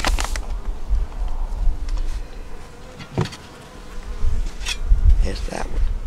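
Honey bees buzzing steadily around an open hive, with wind rumbling on the microphone. A few sharp wooden knocks come in the second half as the hive's wooden lid is handled and set back on.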